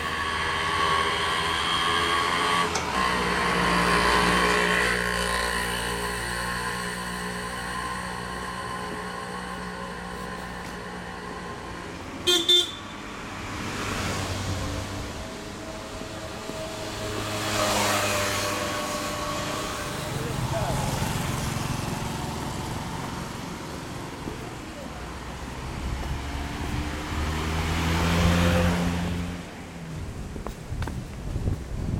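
Street traffic: motor vehicles pass, their engines swelling and fading several times, with a brief, sharp horn toot about twelve seconds in.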